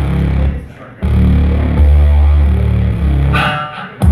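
A live band playing amplified music, with a deep stepping bass line under electric guitar and keyboard. The music cuts out for about half a second after half a second in, then comes back. Near the end it dips again under a brief, higher ringing tone.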